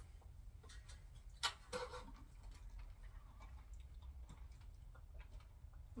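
Faint clicks and taps, the sharpest about one and a half seconds in, over a low steady hum.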